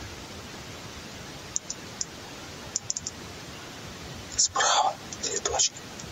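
A man's hushed, whispered voice speaks a short phrase about four and a half seconds in, over a steady hiss. A few faint clicks come before it.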